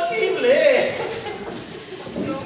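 Speech: spoken stage dialogue from an actor, the voice rising and falling widely in pitch.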